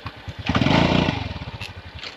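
Small motorbike engine puttering at a steady, even beat, with a loud surge of engine noise about half a second in that fades away over the next second.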